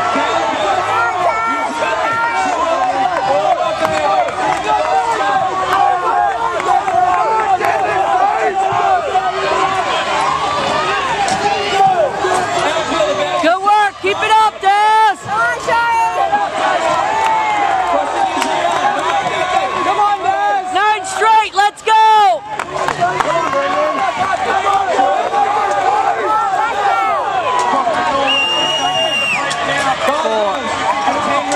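Stadium crowd of spectators shouting and cheering, many voices at once, with one nearby voice shouting louder in two spells around the middle. A brief steady high-pitched tone sounds near the end.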